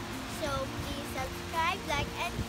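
A young girl's voice speaking to the camera, with steady background music underneath.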